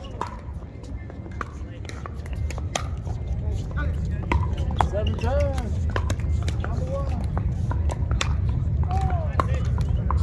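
Wind rumbling on the microphone, growing stronger after the first couple of seconds, with frequent sharp pops of paddles striking pickleballs on nearby courts and some distant voices.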